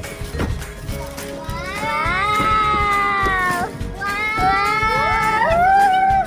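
A child's high-pitched voice giving two long, sliding cries, the pitch rising and then holding, over background music.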